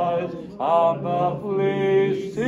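Unaccompanied male voice singing a slow melody in long, held notes with gentle glides between them, phrase after phrase.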